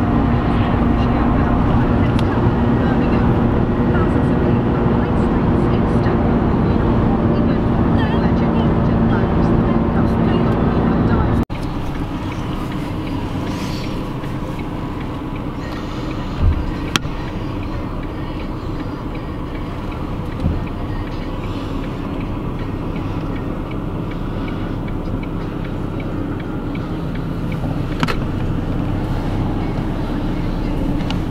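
Inside a moving car: steady engine and road noise with a low hum. About eleven seconds in it cuts abruptly to a quieter steady rumble, with a few brief knocks.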